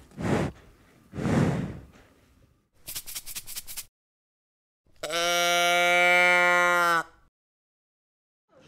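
A cow breathing heavily through its nose twice, a short run of rapid crackling clicks, then one long, steady moo lasting about two seconds that cuts off abruptly.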